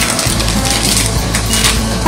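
A polypropylene bag of damp sawdust substrate is pounded down on a table to compact it, with a dull crunching of packed sawdust. Background music plays underneath.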